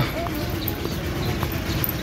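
Steady outdoor roadside background noise with a faint steady low hum and a couple of soft taps.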